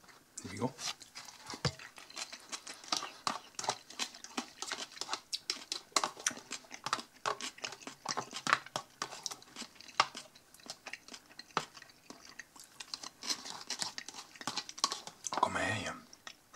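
Close-up eating sounds: a mouthful of sausage-and-cheese salad being chewed while a small plastic fork scrapes and taps inside a plastic tub. It comes across as a dense, irregular run of small sharp clicks.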